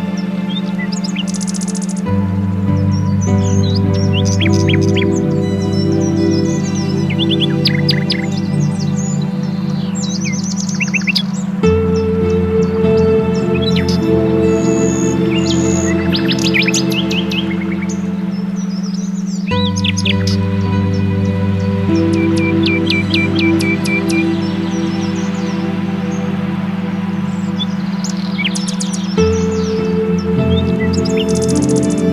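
Ambient meditation music: slow sustained synthesizer chords over a steady low drone, the chord changing every eight to ten seconds. Recorded birdsong chirps on and off throughout.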